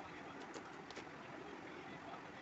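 Graphite pencil strokes on drawing paper: a few short, faint scratches about half a second to a second in, over a steady background hiss.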